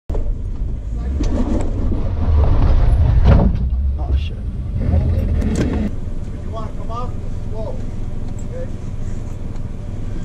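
Jeep engine running under load as it crawls over rock, with a few sharp knocks and scrapes in the first six seconds. About six seconds in the engine eases off and a distant voice calls out.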